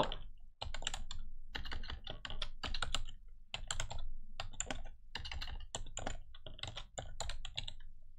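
Computer keyboard typing: a run of irregular keystrokes, with a couple of brief pauses, starting about half a second in.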